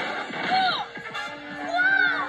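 Cartoon soundtrack playing from a television: background music with short pitched sounds that bend in pitch, one falling about half a second in and one rising and falling near the end.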